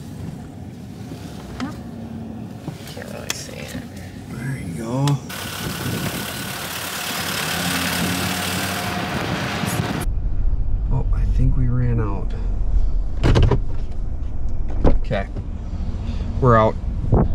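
Pickup truck driving slowly. There is a steady rushing of wind and tyre noise on a microphone held outside the truck. It cuts off suddenly about ten seconds in, and the low rumble of the truck is then heard from inside the cab.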